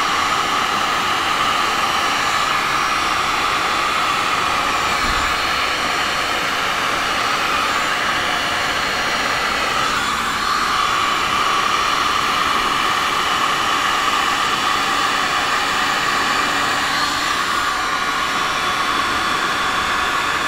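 Handheld electric heat gun running steadily, its fan blowing hot air to push wet epoxy resin across a poured painting. A constant, even rush of air.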